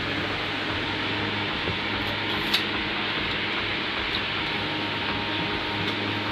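A steady mechanical hum with hiss, like a fan running, with one short click about two and a half seconds in.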